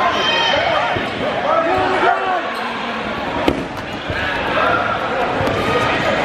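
Several players shouting and calling out at once, with dodgeballs thudding and bouncing on a hardwood gym floor; one sharp smack stands out about three and a half seconds in.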